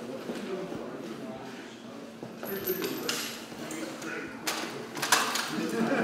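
Indistinct voices in a large, echoing room, with clattering and a few sharp knocks of equipment. The loudest knock comes about five seconds in.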